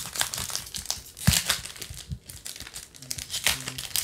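Foil wrapper of a trading-card pack crinkling and tearing as it is pulled open by hand, in an irregular run of sharp crackles.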